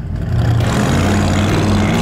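500-cubic-inch Cadillac V8 in a 1973 AMC Gremlin doing a burnout: the engine revs up in the first half second, then holds at steady revs while the rear slicks spin on the pavement with a loud hiss over the engine hum.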